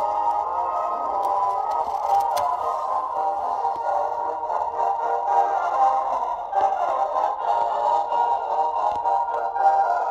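A vintage-style Santa Fe railroad advertisement jingle playing as an Easter-egg sound sequence from the onboard speaker of a Rapido ALCO PA model diesel locomotive's sound decoder. The music sounds thin, with little bass or treble.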